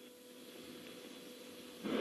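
Faint steady hiss with a thin, steady low hum: the quiet background of a broadcast audio feed, with no rocket engine sound heard.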